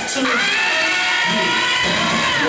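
Dance-routine music mix at a break: the bass and beat drop away and one long, slightly sliding vocal line carries on alone, with the full mix returning just after.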